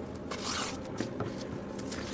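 A knife drawn through a slab of dough, its blade scraping along a stainless steel counter for about half a second, followed by a couple of light knocks.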